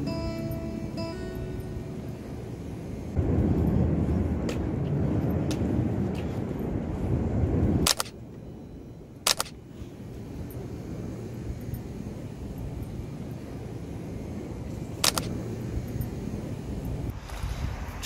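Acoustic guitar background music fading out in the first second or two, giving way to outdoor street ambience. The ambience is a steady rush of noise, louder for several seconds, then dropping suddenly about eight seconds in to a quieter hum broken by a few short clicks.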